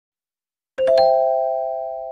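A three-note rising chime, like a doorbell, struck in quick succession about three-quarters of a second in, then ringing on and slowly fading.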